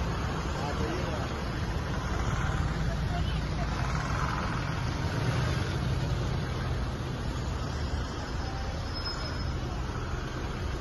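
Cars rolling slowly past one after another, a steady low engine and tyre rumble with faint voices in the background.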